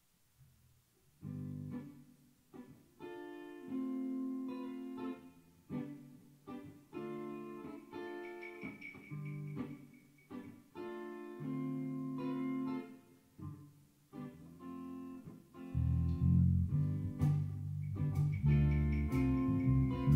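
Live band starting a song: an electric guitar plays a chordal intro alone, in phrases with short gaps. About three-quarters of the way through, bass and drums come in, much louder.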